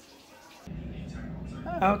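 Near silence, then a steady low hum that starts abruptly about two-thirds of a second in and holds through to the end.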